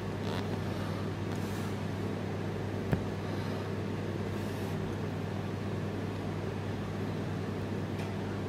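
A steady low hum with a single short click about three seconds in.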